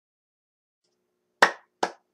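Silence, then two sharp hand claps about half a second apart near the end, the start of a clapped rhythm leading into a song.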